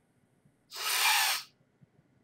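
A person making a loud, breathy sniffing sound into a close microphone as a vocal sound effect for a large creature sniffing. One breath noise lasting under a second.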